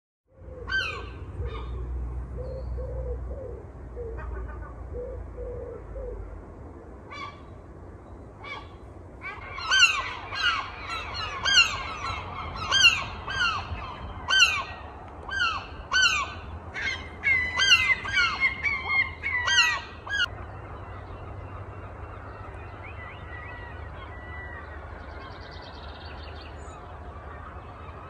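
Outdoor birds calling: a long series of loud, short honking calls, each falling in pitch, repeated about twice a second from about ten to twenty seconds in. Quieter, lower repeated calls and a low rumble come in the first few seconds, and only a faint steady background remains after the honking stops.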